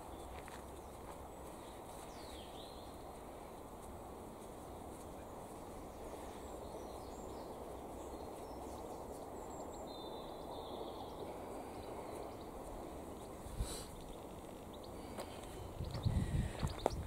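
Steady outdoor background noise, low and even, with a few faint bird chirps, one a short falling call a couple of seconds in. A single soft knock comes near the end.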